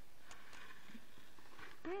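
Faint handling noise with a few light taps from fingers and a plastic container close to the phone's microphone, ending with a short, falling "mmm" from a person's voice.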